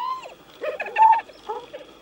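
Spotted hyenas giggling: a rising and falling call at the start, then two quick runs of short, stuttering notes. The giggling is a sign of stress, aggression and competition over food.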